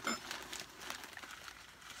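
Faint crinkling and soft crackles of a clear plastic bag lining a cardboard box as it is handled.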